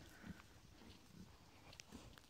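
Near silence: only faint low background noise, with no clear sound standing out.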